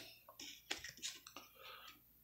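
Faint clicks and rustles of chromium-finish trading cards being handled and slid over one another as a pack is flipped through, card by card.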